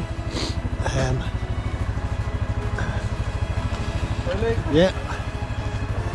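An engine idling with a steady low throb, about fifteen even pulses a second, under brief voices.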